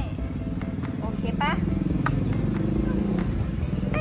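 A motor vehicle engine running, its low drone rising and falling in pitch through the middle, under background music.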